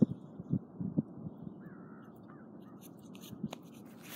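Hands rubbing and patting together to brush off clinging dirt: a few soft pats in the first second or so, then a faint dry rustle.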